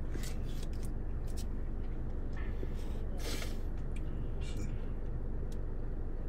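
Light rustling and clicking of a plastic dipping-sauce cup being handled, with a short rasp a little after three seconds as the peel-off lid comes off the barbecue sauce. A steady low hum of the car cabin runs underneath.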